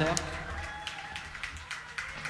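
Quiet lull in a live club set: a faint held instrument tone and a low hum under scattered audience noise and a few claps or taps.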